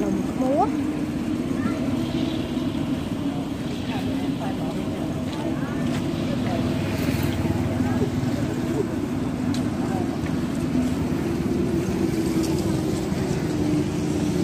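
Busy outdoor market ambience: a steady low hum with faint background voices and the odd light clink.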